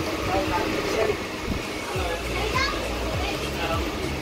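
Background chatter of several people's voices overlapping in a railway coach, no single clear speaker, over a low hum that strengthens about halfway through.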